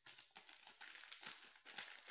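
Faint crinkling and crackling of a foil trading-card hanger pack's wrapper being handled by hand, in quick irregular crackles.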